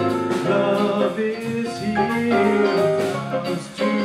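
Live performance of a song: a man singing with instrumental accompaniment that includes a woodwind, the music dipping briefly near the end.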